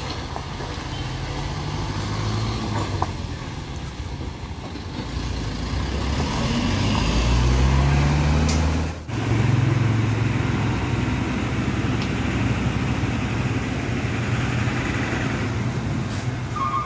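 Truck diesel engines working at low speed: the Isuzu Elf NMR's engine rises in pitch and grows louder as it crawls close past, about 6 to 8 seconds in. A sudden break comes about 9 seconds in, then another heavy truck's engine runs steadily.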